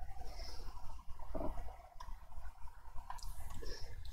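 Quiet pause with a steady low hum and a few faint clicks from the computer mouse and keyboard being worked.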